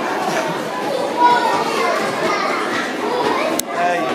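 Background chatter of children playing and people talking, with one sharp click near the end.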